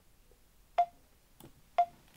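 Two short countdown beeps from screen-recording software, about a second apart, each a sharp tick with a brief tone.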